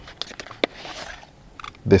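A heavy black ceramic perfume bottle being slid out of its cardboard box: a few light clicks and knocks, then a brief papery rustle as it comes free. A man starts speaking near the end.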